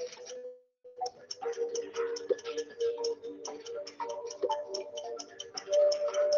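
Quiz-game countdown music with a quick, steady ticking beat over sustained tones. It drops out completely for about half a second near the start, then carries on.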